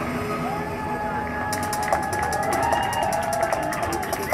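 Live electronic music from the stage in a quieter passage, with sliding tones, joined about one and a half seconds in by a fast, high ticking rhythm.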